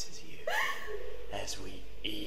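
Short, non-word vocal sounds from a holophonic (binaural) horror audio recording, rising in pitch, twice.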